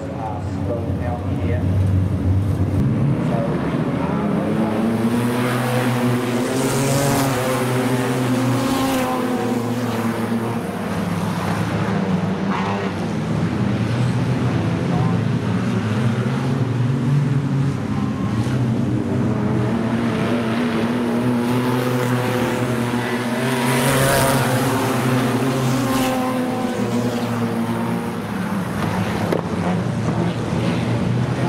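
A pack of wingless sprintcars racing on a dirt oval. Their engines are at full throttle, and the engine note rises and falls twice as the cars come round and pass by.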